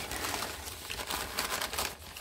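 Crumpled packing paper rustling and crinkling as hands press into it and pull it aside in a cardboard box, a steady crackle of many small ticks.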